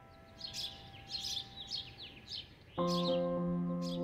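Small birds chirping: a quick series of short high calls, each sweeping down in pitch. Near the end a soft held keyboard chord of the background music comes in over them.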